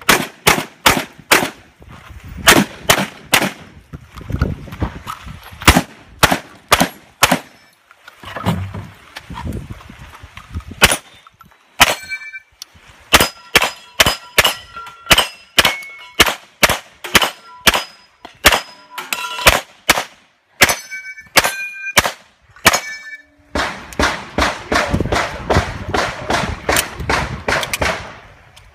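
A long string of gunshots, shotgun blasts at first. Later in the string, many shots are followed by the ringing of steel targets being hit, and a fast run of shots comes near the end.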